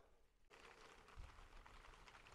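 Near silence: faint outdoor background hiss that starts after a cut about half a second in.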